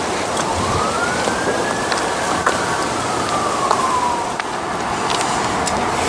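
A distant siren wail: one long tone rising for about a second and a half, then slowly falling away. It sits over a steady rushing noise with scattered small clicks.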